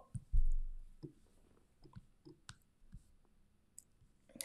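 A low thump about a third of a second in, then a few faint, scattered clicks from a computer mouse.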